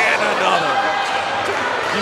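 Open-hand chops slapping against a wrestler's chest, with a sharp slap about one and a half seconds in, amid voices.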